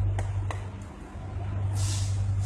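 A metal spoon clinks twice against a metal baking tray as spoonfuls of batter are dropped onto it, over a steady low hum, with a short hiss near the end.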